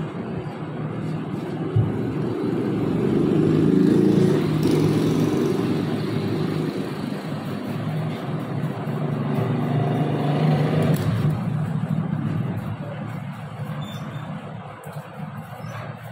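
A motor vehicle engine rumbling, rising to a peak a few seconds in, swelling again later, then fading. One sharp click comes just before two seconds in.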